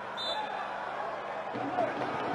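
Faint football-pitch ambience from a match broadcast: a steady hiss of background noise with faint distant voices, and a brief high tone early on.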